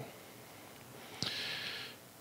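A man's short, soft breath in, starting with a small mouth click a little past the middle and lasting under a second, against low room tone.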